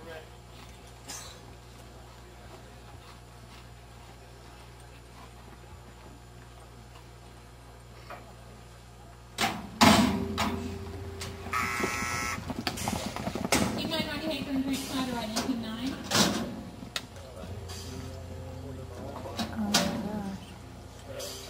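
A steady low hum, then about halfway through a sudden loud metal clang, typical of a roping chute gate springing open to release the steer. After it come several seconds of loud voices calling out and general commotion.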